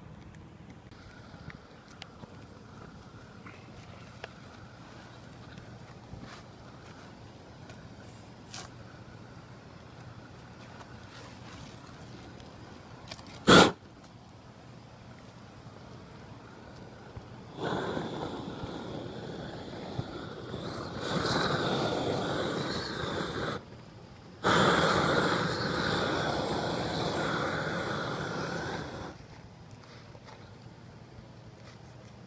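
Propane roofing torch burning with a loud, steady rushing sound as it heats a torch-down roofing membrane on a chimney crown. It comes on a little past halfway, cuts out for about a second, comes back on, and drops away near the end. Before it there is a single sharp, loud pop.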